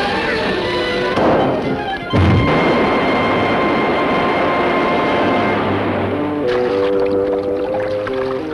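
Cartoon orchestral score with water sound effects: a rising whoosh, then just after two seconds a heavy splash as a mass of water drops. Several seconds of rushing, sloshing water follow, and the music notes come back clearly near the end.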